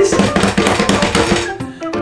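Music with a rapid drum roll building suspense, easing off near the end.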